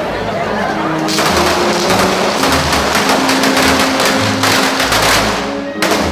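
A traca, a string of firecrackers, going off in a fast rattle of cracks from about a second in until near the end, followed by one more sharp bang. Music plays under it.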